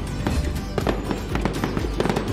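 Festive background music mixed with firework sound effects: a quick scatter of pops and crackles.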